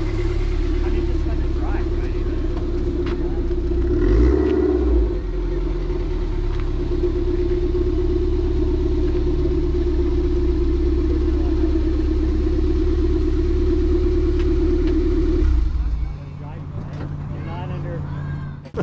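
Toyota MR2 Spyder's 1.8-litre four-cylinder engine running at low revs as the car pulls in and parks, rising briefly about four seconds in. It is switched off near the end.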